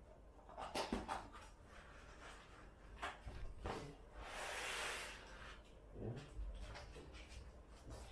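A cardboard box being opened and unpacked by hand: flaps and cardboard inserts rubbing and knocking, with a longer scraping rustle about four to five seconds in and a few light knocks after.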